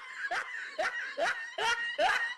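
A person laughing in short, repeated bursts, about two a second, each rising in pitch.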